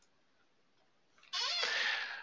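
A single animal call, about a second long, with a wavering pitch, starting just past the middle.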